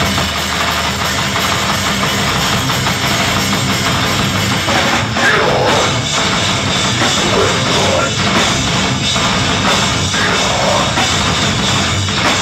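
Metalcore band playing live: distorted electric guitars, bass and a pounding drum kit, with a vocalist screaming from about five seconds in.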